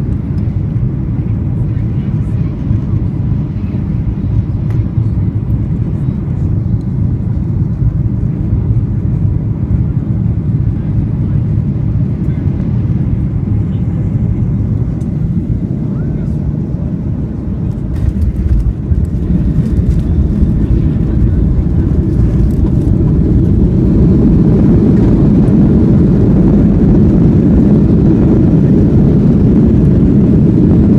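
Cabin noise of a Boeing 737-800 landing: a steady rush of engines and airflow on final approach, a few knocks a little past halfway as the wheels touch down, then a louder, steady rush from about three-quarters of the way through as the jet rolls out on the runway with its spoilers raised.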